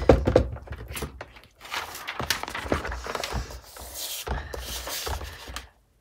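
Tracing paper being slid and handled on a Fiskars paper trimmer: irregular rustling with small knocks and taps on the trimmer's plastic base, and a longer stretch of rustling a little past the middle.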